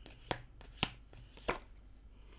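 A tarot deck being shuffled by hand, with three sharp card snaps about half a second apart and fainter ticks between.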